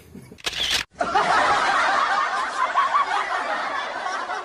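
A camera shutter sound effect about half a second in. Then, from about a second in, canned laughter from many voices.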